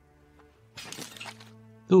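A bowl of noodles smashing on the ground: a brief shattering crash about three-quarters of a second in, over soft sustained background music.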